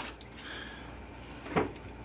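Metal fork and knife on a ceramic plate: a click as the knife is set down near the start, then soft scraping as the fork cuts through the food, and a short knock about a second and a half in.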